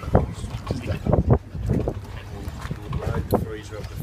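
Short voices and sharp knocks of fishing gear as an angler pumps a heavily bent game rod against a large fish, over a low steady hum.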